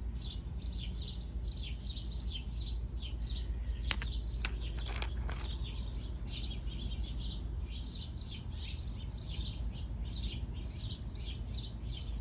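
Small birds chirping over and over, short high chirps about three a second, over a low steady rumble. A couple of sharp clicks stand out about four seconds in.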